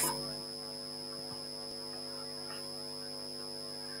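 Steady electrical mains hum with a faint high steady whine over it, and nothing else heard.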